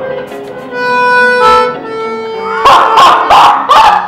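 A small handheld keyboard instrument plays a few long, steady reedy notes. About two-thirds of the way in, a person breaks into loud, wavering cries, louder than the notes.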